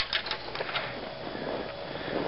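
Footsteps in snow: a few short steps near the start, then steady faint background noise.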